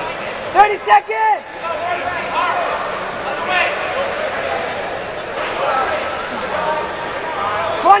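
Spectators shouting instructions and encouragement at a jiu-jitsu match over the steady chatter of a crowded arena, with loud shouts about half a second in and again at the end.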